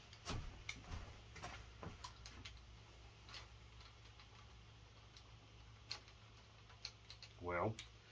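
Faint, irregular metallic clicks of a socket and hand tool on the rocker shaft bracket bolts of a Mopar 360 V8, over a low steady hum.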